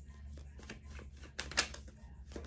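Tarot cards being handled on a table: a few light clicks and taps, the loudest about one and a half seconds in, over a low steady hum.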